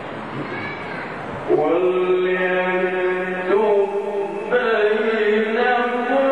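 Male Quran reciter chanting in the ornamented Egyptian tajweed style through a microphone, with long held melodic notes that step in pitch. The chant enters about a second and a half in, after a stretch of unpitched background noise.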